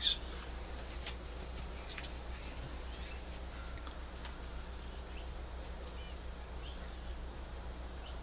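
A small bird chirping in short runs of quick, high notes every second or two, over a steady low hum.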